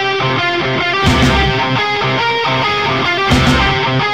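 Instrumental passage of a heavy rock song with no singing: electric guitars playing sustained chords, with the bass end coming in strongly twice.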